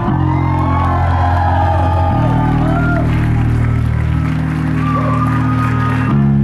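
Live band holding sustained chords, the low notes shifting twice, with the crowd whooping and cheering over the music.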